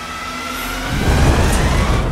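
Aircraft engine whine rising steadily in pitch, joined about a second in by a heavy low rumble as it builds in loudness.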